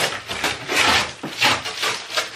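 Clear packing tape being pulled off the top of a cardboard moving box in several noisy pulls, with the cardboard flaps rubbing as they come free.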